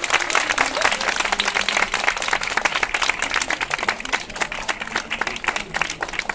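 A small audience clapping steadily at the end of a performance.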